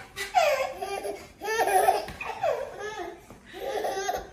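A baby laughing in several bursts of high-pitched laughter.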